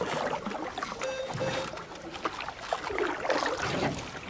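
Irregular knocks and rustling in a gym as a person moves about and handles workout equipment.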